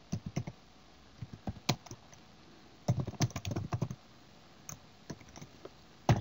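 Typing on a computer keyboard: keystrokes in short bursts with pauses between, the densest run about halfway through.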